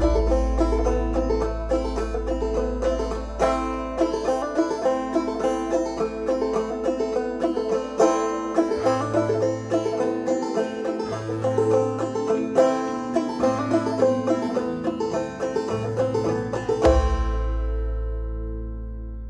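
Background music: an instrumental banjo passage in a country song, quick plucked notes over a bass line, ending on a struck chord that rings out near the end.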